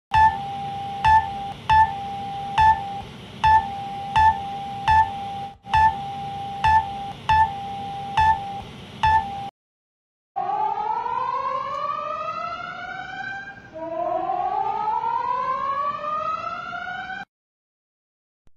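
Synthesized emergency alert alarm: a steady tone broken by short, sharp beeps about every three-quarters of a second for around nine seconds. After a brief gap come two long rising siren sweeps.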